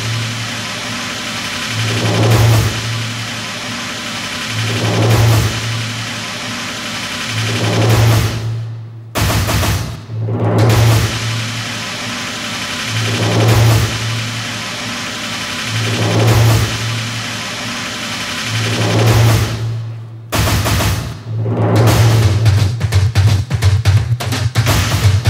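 A drum line playing: a deep drum hit about every two and a half to three seconds over a steady wash of sound, with two short breaks. Near the end, rapid snare drumming breaks in.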